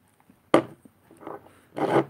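A single sharp knock about half a second in as a glass perfume bottle is handled at the table, followed by faint handling noise.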